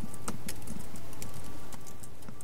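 A few keystrokes on a MacBook Pro laptop keyboard: sparse sharp clicks, most in the first half second, over a steady room hum.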